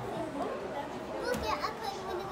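Indistinct chatter of children's voices, with a brief click a little after halfway.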